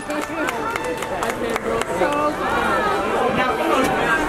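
Several people talking over one another: the chatter of a small crowd, with a few sharp clicks among the voices.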